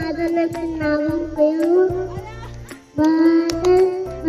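A child singing a melody into a microphone over music with a steady beat, with a brief break just before three seconds in.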